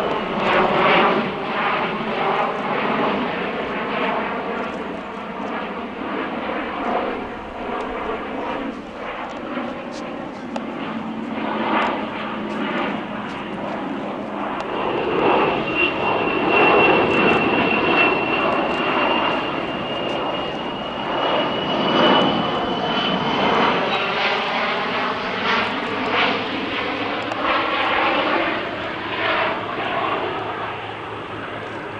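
Beriev Be-200ES amphibious jet's two turbofan engines running through a low display pass, a continuous jet noise whose tone shifts and sweeps as the aircraft moves overhead. A thin high whine holds for several seconds around the middle.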